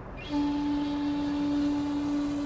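A steady low hum on one held pitch, with a hiss behind it, starting a moment in.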